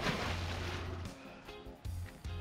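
A splash of something thrown from a boat into the water, fading over about a second, over background music with a low bass line.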